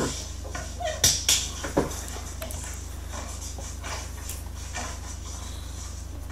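A few light knocks and scuffs of a dog's paws and a person's feet on a concrete floor during play, about one to two seconds in, over a steady low hum.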